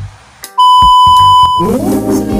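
A single loud, steady electronic bleep tone, about a second long, starting about half a second in and cutting off suddenly; plucked-string background music comes in right after it.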